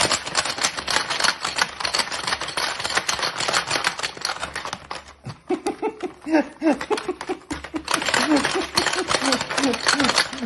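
Hungry Hungry Hippos plastic game clattering rapidly, with its hippo levers pressed over and over. The clatter pauses about halfway through while a person laughs, then starts again.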